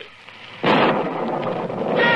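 Sound effect of a lightning strike hitting a tree: a sudden loud thunderclap crash about half a second in that dies away slowly, over steady rain.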